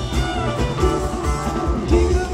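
Live rock band playing: electric guitars over bass and drums, heard from the audience in a large, echoing arena.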